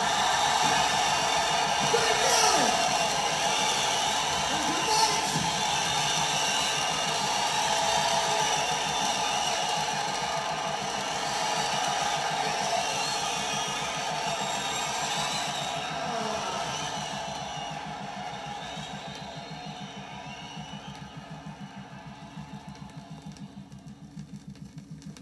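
Crowd cheering and shouting on a live rock album playing from a vinyl record, fading out steadily after the music ends.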